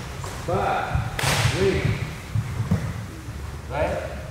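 A karate uniform snapping once, sharply, about a second in, as a technique is thrown, ringing briefly in a large hall. A man's voice makes short utterances around it.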